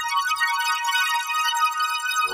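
Kyma synthesizer notes played from an iPad pad grid: several high-pitched tones sounding together and overlapping, with no bass under them.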